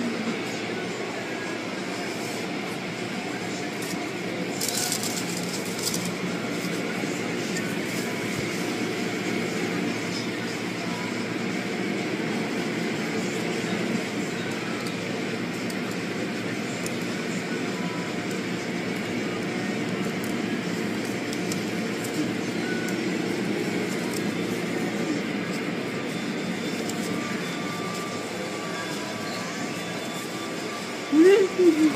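Steady machine noise with no clear breaks or events.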